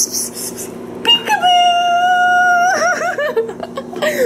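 Infant girl letting out a long, high, steady squeal for about a second and a half, then a few short up-and-down vocal sounds.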